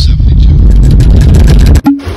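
Loud, distorted low rumble like an engine that cuts off suddenly near the end, followed by a brief hum.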